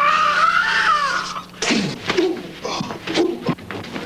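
A man's long, high, wavering yell for about a second and a half, then short grunts and knocks as two men scuffle.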